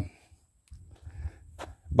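A pause in a man's speech, filled with faint low background noise and one short click about one and a half seconds in. Speech starts again at the very end.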